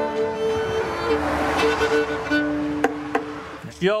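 Fiddle closing out an old-time mountain tune: long held bowed notes, then a lower note drawn out near the end as the tune's last note.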